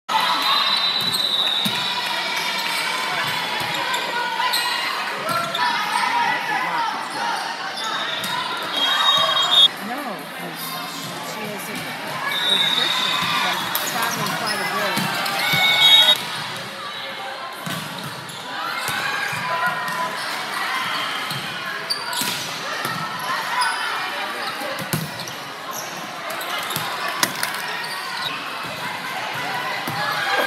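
Indoor volleyball game sound in a large gym: players and spectators calling and shouting, with sharp smacks of the ball being hit, the loudest about ten and sixteen seconds in. Several brief shrill high tones sound along with them, four times in the first sixteen seconds.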